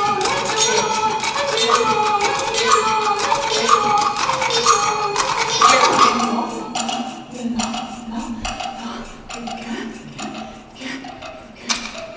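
Live contemporary percussion with a woman's voice: for about six seconds a pitched vocal line is heard over dense rapid taps. It then thins out to sparse, sharp taps of sticks on small hand-held wooden boxes over a low held tone, with one louder tap near the end.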